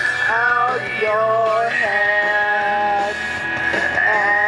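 Pop-rock song with a vocal singing a string of long held notes without words, over a steady band backing.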